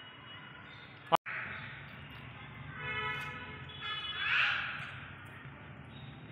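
A young child's high-pitched voice calling out wordlessly twice, the second call rising into a louder cry. There is a sharp click with a brief dropout about a second in.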